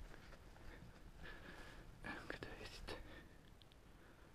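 Near silence: faint outdoor background, with a few soft indistinct sounds about two to three seconds in.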